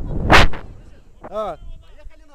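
A short, loud rush of wind buffeting the microphone as the jumper swings on the rope, then a brief shout, its pitch rising and falling, about a second and a half in.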